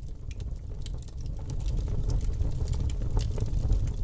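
Sound effect under a title card: a low rumble that grows louder over the first two seconds, with scattered sharp clicks or crackles running through it.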